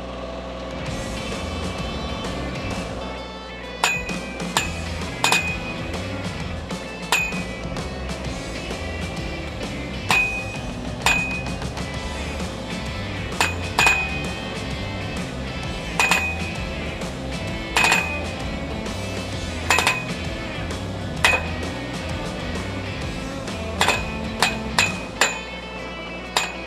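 Montana T-Rex post driver pounding a metal fence post: sharp, ringing metal-on-metal strikes that start about four seconds in and come irregularly, roughly once a second, bunching into quick runs near the end. Under them the Bobcat MT85 mini track loader's engine runs steadily.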